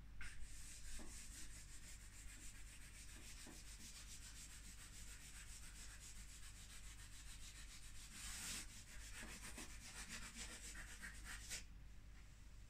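Charcoal drawing on paper: fast, continuous scratchy strokes as the stick is rubbed and hatched across the sheet, faint throughout and a little louder about eight and a half seconds in.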